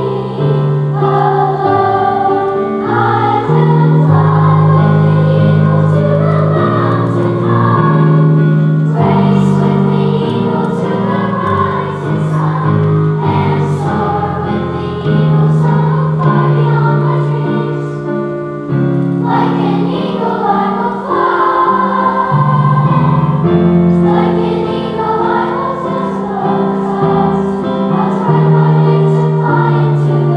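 Fifth-grade children's choir singing a song, with accompaniment holding long low notes under the voices.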